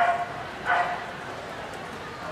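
A small dog barks twice, two short sharp yips about three-quarters of a second apart, over the steady murmur of an indoor hall.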